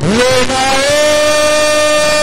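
A man's voice through the church sound system holding one long, high, loud note, sliding up into it at the start and then holding steady.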